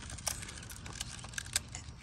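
Nylon trimmer line being wound by hand onto the plastic spool of a Stihl AutoCut 25 trimmer head: light, irregular clicks and rustling of line and spool.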